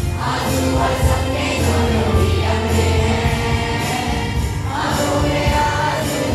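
A school choir singing a patriotic song in unison through a PA loudspeaker, with a regular percussion beat.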